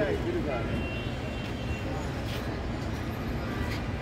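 Steady low rumble of vehicles and traffic, with people talking among them; one voice is heard briefly at the start.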